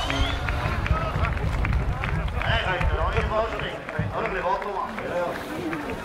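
Voices talking, over a low rumble that eases after about three seconds.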